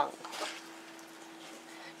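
Faint soft shuffling of moist, sugar-coated apple slices being pressed by hand into a pie shell, over a steady low hum.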